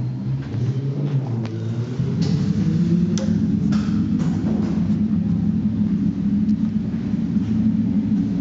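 Ducati Desmosedici RR's V4 engine running, its speed rising about two seconds in and then holding steady at a higher, louder note. A few light clicks sound over it.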